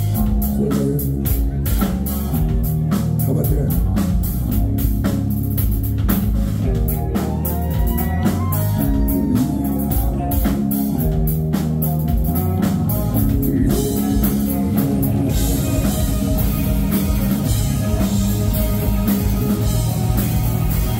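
Live rock band playing an instrumental passage: electric guitar, bass guitar and a drum kit keeping a steady beat. About three quarters of the way through, the cymbals come in thicker and the band plays fuller.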